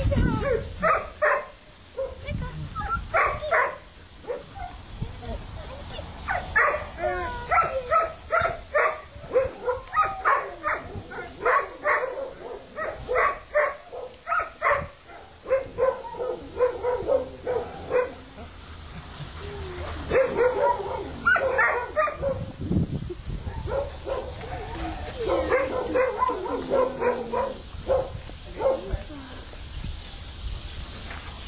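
Dogs barking repeatedly, several short barks a second, in runs broken by brief pauses.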